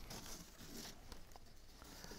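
Faint rustling and light taps of a cardstock box card being handled and pressed down by hand.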